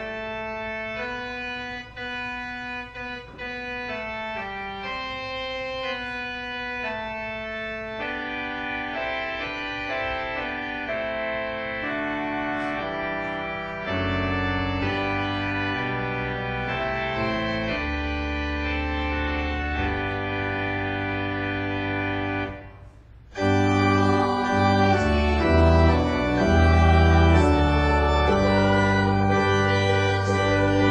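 Church organ playing held chords that change step by step. Deep pedal bass comes in about halfway through. After a short break near the end it plays louder and fuller.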